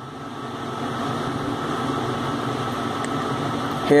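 Steady room noise, a fan-like hum and hiss with a faint steady tone, swelling slightly over the first second and then holding level.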